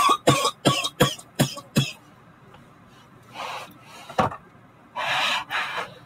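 A woman coughing hard after inhaling from a cannabis vape pen, a quick fit of about six sharp coughs in the first two seconds. It is followed by a few longer, breathier coughs later on.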